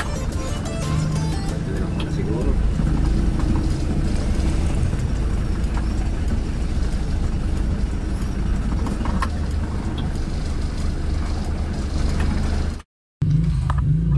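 Engine and road noise inside the cabin of an old van while it is being driven, a steady low rumble under background music. The sound cuts out for a split second near the end.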